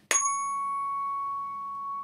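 Tuning fork struck once on a rubber hockey-puck striker, then ringing one steady, clear tone. Its fainter high overtones die away within about a second while the main tone holds.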